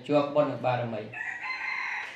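A rooster crowing once: a drawn-out, high call that starts about a second in, after a man's voice.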